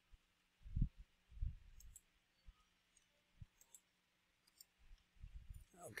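Faint computer mouse clicks, a handful spread a second or so apart, with a few soft low thumps in between, the loudest about a second in.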